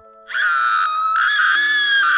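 A woman's long, high scream, a horror sound effect, starting about a third of a second in and held with a slight rise in pitch. Steady low background music drones underneath.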